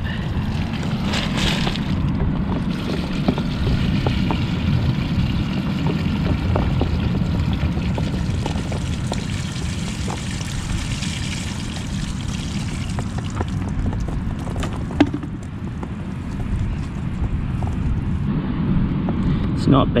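Water and whitebait poured from a plastic bucket onto a wooden-framed wire-mesh sieve, draining through the mesh into a tub below, over a steady low rumble.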